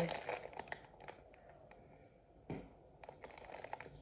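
Plastic snack wrapper crinkling as it is handled and pulled open: dense crackling in the first second, then scattered faint rustles with one louder crackle about two and a half seconds in.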